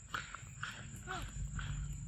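Footsteps crunching on dry leaves and dirt, about two steps a second, with a short squeak about a second in.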